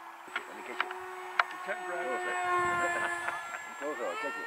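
64 mm electric ducted fan of a Hobbyking Sonic 64 RC jet whining steadily as it makes a pass, growing louder to a peak about two and a half seconds in and then easing off. A few sharp clicks sound in the first second and a half.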